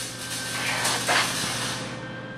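A steady hissing noise with a faint low hum underneath, a little louder about halfway through.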